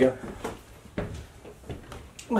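A few light, irregular knocks of footsteps on wooden stairs, the strongest about a second in.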